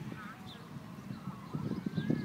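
Mallard ducklings peeping in short high chirps. About a second and a half in, a quick run of short low quacks starts, likely from the hen.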